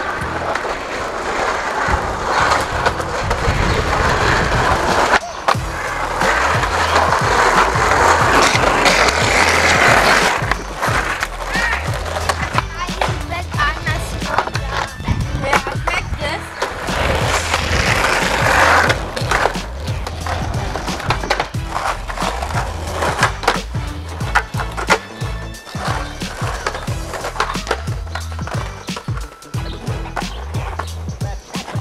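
Skateboard wheels rolling on asphalt, the rough rolling noise loudest in the first ten seconds and again briefly about eighteen seconds in, with many sharp clacks in the second half. It plays under background music with a repeating bass line.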